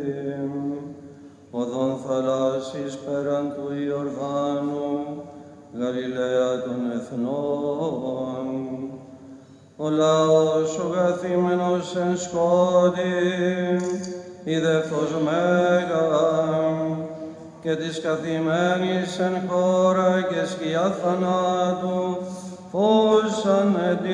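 Byzantine chant: male voices sing slow melismatic phrases, separated by short breaths, over a steady low held drone (the ison). The drone steps up in pitch about ten seconds in.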